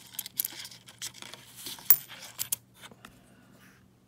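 Nickels clicking and clinking against each other as they are pushed apart and picked out of an opened coin roll: a run of sharp metallic ticks, the loudest a little before two seconds in, dying away about three seconds in.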